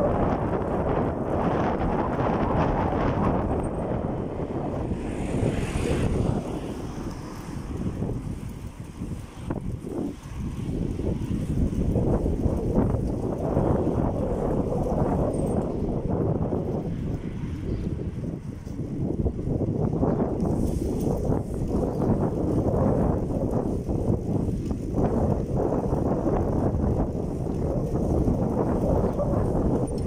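Wind buffeting the microphone of a camera on a moving bicycle: a steady low rumble that eases off briefly twice.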